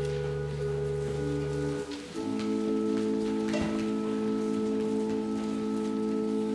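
Organ playing offertory music in slow held chords; a low bass note drops out and the chord changes about two seconds in.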